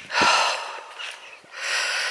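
A woman's heavy breathing: two long breaths, the first just after the start and the second about a second and a half in. It is the laboured breathing of a walker whose chest has been bad, with coughing spells.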